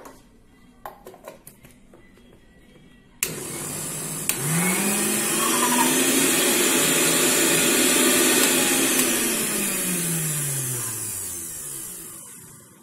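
Electric mixer-grinder (mixie) with a stainless-steel jar grinding soaked semolina into cake batter. A few light clicks as the lid goes on, then about three seconds in the motor starts suddenly: its hum rises in pitch, runs steadily, then falls and winds down over the last few seconds.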